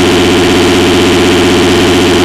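Loud, distorted cartoon crying sound: one long, steady, buzzy wail with a fast warble.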